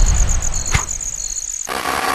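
Title-sequence sound effects: a low rumble fades away under a rapid, high, cricket-like chirping. About three-quarters of the way in the chirping cuts off and a burst of TV-static hiss takes over.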